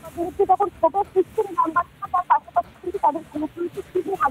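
A crowd shouting, many voices overlapping in quick short cries.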